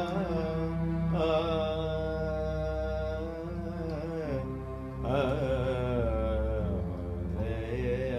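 Electronic keyboard playing a slow, ornamented Indian melody with gliding, wavering notes over a steady low drone, a little softer just past the middle.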